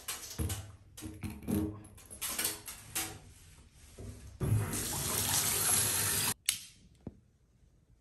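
Water running from a bathtub tap into the tub, coming in uneven splashes at first. About halfway through it becomes a steady stream, which cuts off suddenly about two seconds later as the tap is shut.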